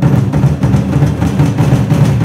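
A troupe beating large barrel drums together in a fast, dense roll, the strokes running into one another with a deep booming body.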